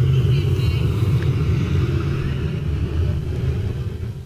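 Steady low rumble on the soundtrack of a projected video, played over the room's speakers; it drops away sharply right at the end as the video finishes.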